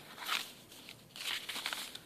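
Coffee-dyed paper pages of a handmade journal being turned by hand: soft paper rustling in two quiet swishes, a short one just after the start and a longer one in the second half.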